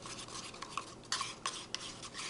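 Wooden craft stick stirring thick acrylic pouring paint in a paper cup: soft scraping against the cup walls, with a few sharper clicks in the second half. The paint is being mixed after drops of silicone were added to the cup.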